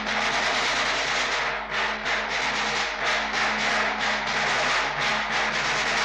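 A sustained drum roll on large drums: a continuous, dense rattle with no melody, held steady throughout.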